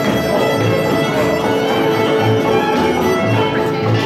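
Live bluegrass string band playing, with the fiddle prominent over acoustic guitar and banjo. Plucked double bass keeps a steady beat of about two notes a second.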